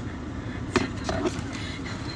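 Car seat belt drawn across and buckled, with a sharp click about three quarters of a second in, over the low steady hum of the car cabin.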